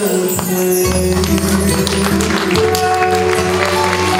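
Live Turkish folk ensemble playing an instrumental passage, with violin, long-necked lute (bağlama), keyboard and light percussion: held melody notes over a steady bass.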